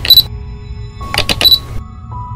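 Camera-shutter sound effects over a low sustained music pad. Two quick bursts of clicks come about a second apart, each ending in a short high beep.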